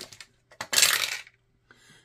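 Small dice clattering down through a wooden dice tower and landing in its tray: one rattle lasting about half a second.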